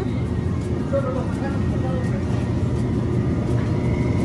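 Supermarket background noise: a steady low rumble, with faint voices about a second in.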